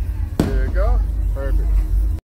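Steady low rumble of wind buffeting the microphone on a swinging Slingshot ride capsule, with one sharp knock about half a second in. A rider's voice calls out in short wordless glides over it.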